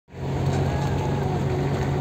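Steady engine hum and road noise of a vehicle driving along, heard from on board.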